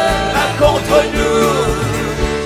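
Live gospel worship band playing, with keyboard, bass guitar and drums under a singer's voice that bends and glides in pitch.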